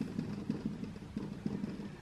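Marker pen drawing short dashes on a whiteboard: a series of faint, soft, irregular taps and strokes.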